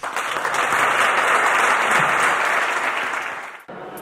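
Audience applauding, breaking off suddenly about three and a half seconds in.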